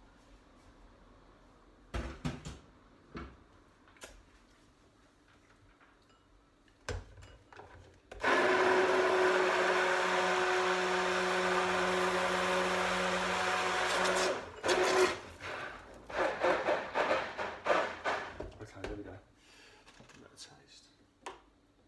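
Hand-held stick blender running steadily for about six seconds, starting about eight seconds in, as it purées soup in a saucepan. Short knocks and clatter come before it and in the few seconds after it stops.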